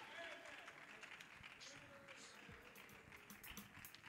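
Near silence in a hall between songs, with a few faint distant voices.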